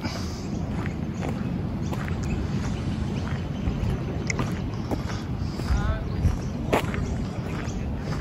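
Wind on the microphone outdoors: a steady, low rushing noise, with a few light clicks.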